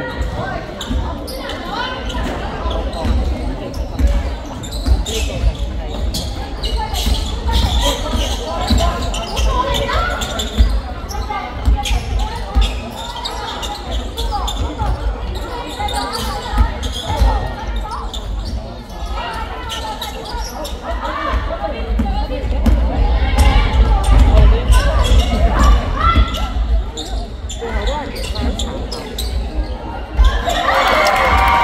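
Basketball game on a wooden court in a large sports hall: the ball bouncing in irregular thumps amid people's voices, all echoing through the hall.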